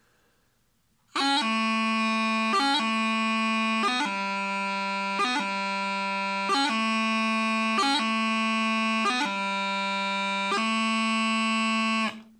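Bagpipe practice chanter playing about a second in. A held low note is broken about every 1.3 seconds by quick finger movements: full tachums from C to A and from B to G.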